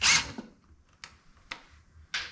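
Cordless drill briefly running to back out the screws holding an electrical flush box, stopping about half a second in, followed by two light clicks.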